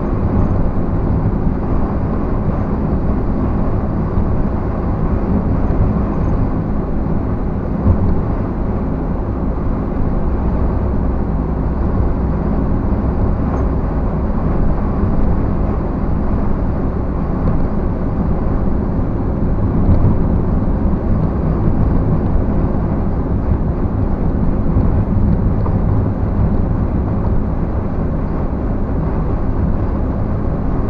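Steady road noise heard from inside a moving vehicle's cabin: the engine running at cruising speed with a low hum, and tyres rolling on asphalt.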